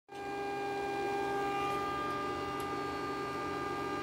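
Lincoln Electric SP-170T MIG welder switched on and idling, giving a steady, even electrical hum with several fixed tones in it.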